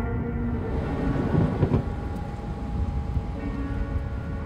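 Thunder rumbling low with the hiss of rain. The held tones of background music fade out in the first second, and the rumble swells about a second and a half in.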